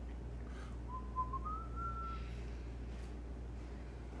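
A person whistling briefly: a short note that steps up to a higher held one, lasting about a second and a half, over a steady low hum.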